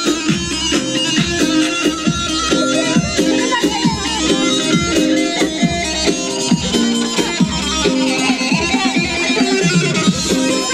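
Live amplified Turkish folk dance music from a saz group: plucked saz (bağlama) playing a busy melody over a steady beat.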